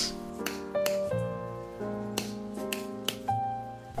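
Soft background music with sustained melodic notes, with several sharp taps or clicks at uneven intervals over it.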